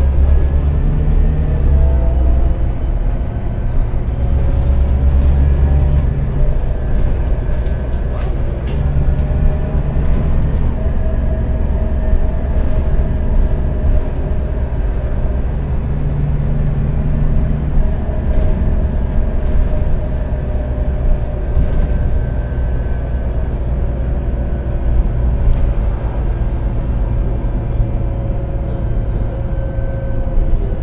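Renault Citybus 12M city bus driving, heard from inside the passenger cabin: a steady low engine rumble with a whine that drifts gently up and down in pitch, and a few brief rattles.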